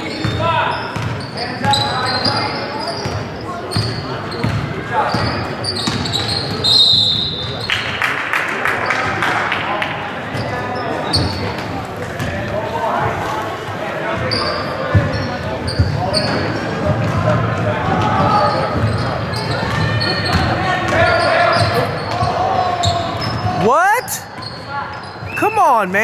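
Youth basketball game in a gym: echoing voices of players and spectators, a basketball bouncing on the hardwood floor, and a few sharp rising sneaker squeaks near the end.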